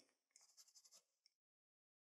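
Very faint, quick scratchy brushing for about a second: a brush stroking over a false nail tip.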